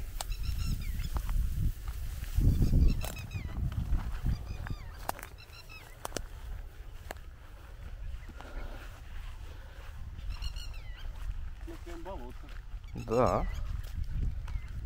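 Birds calling several times with short, wavering high chirps, and a louder, lower honking call near the end. Wind rumbles on the microphone underneath, strongest about three seconds in.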